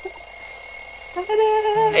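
A smartphone alarm ringing with a thin, high, steady tone. A little over a second in, a held, steady lower note joins it.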